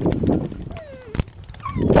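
A dog whining in thin, falling whimpers amid rustling grass and handling noise, with a shout starting near the end.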